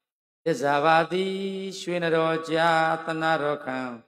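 A male Buddhist monk chanting Pali paritta verses in a steady, melodic recitation, holding long even notes with brief breaks for breath. The chant starts about half a second in.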